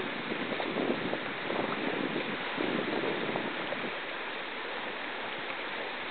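Steady rush of a fast, turbulent glacial river running in whitewater.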